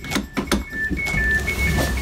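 Train door warning signal: two high beeping tones, one a little higher than the other, alternating about four times a second over the low rumble of the moving train, with a few knocks early on.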